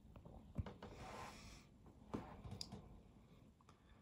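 Near silence: quiet room tone with a few faint clicks, the clearest about half a second and two seconds in, and a soft breath-like hiss around one second in.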